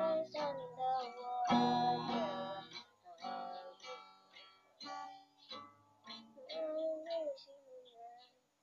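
Acoustic guitar strummed in slow, separate chords, with a child's voice singing softly along in places, clearest near the start and again about seven seconds in.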